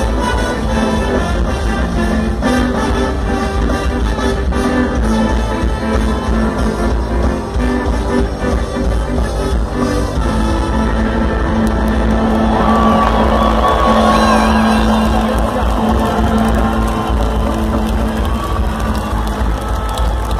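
Ska band playing live, with electric guitars, trumpet and drums, loud and steady, and a crowd cheering and whooping over it; the cheering swells midway through.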